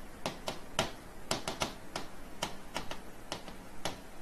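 Pen tip tapping and clicking on the glass of an interactive whiteboard display during handwriting: about a dozen sharp, irregular clicks.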